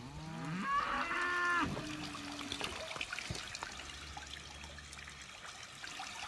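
A cow mooing once, a bending call of about a second and a half at the start, over the trickle and splash of water at a galvanized stock tank where cattle are drinking.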